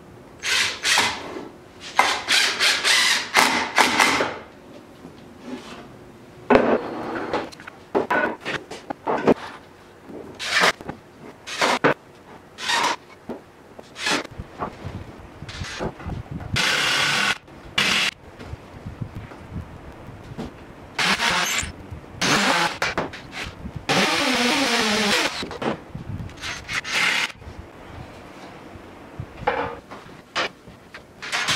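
Cordless drill run in a string of short bursts, drilling holes and driving screws, with quieter gaps between. One run a little past the middle falls in pitch as the motor spins down.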